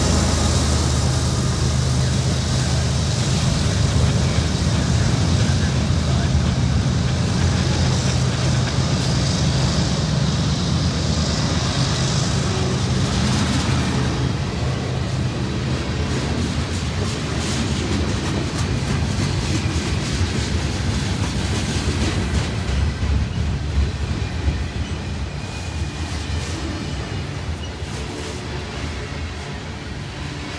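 Freight train passing close by. A diesel locomotive's engine runs with a deep hum for the first dozen or so seconds, then gives way to the steady rumble and clatter of tank cars and covered hoppers rolling over the rails, which slowly grows quieter.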